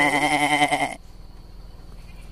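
Goat bleating: one loud, wavering bleat lasting about a second.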